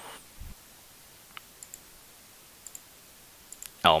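Faint computer mouse clicks, several light ticks spread over a few seconds, some in quick pairs, as options are picked and a checkbox is ticked in an on-screen editor.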